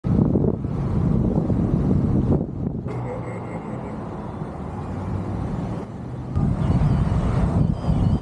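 Wind rushing over a microphone mounted on the outside of a moving pickup truck, over a steady low road and engine rumble from the truck driving.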